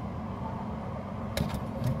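A sharp light click about one and a half seconds in, with a fainter one just after, as a 10 mm cylinder magnet is put into the clear plastic tube. A steady low hum runs underneath.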